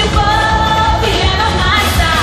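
Live pop song: a woman singing over a dance beat with heavy, steady bass.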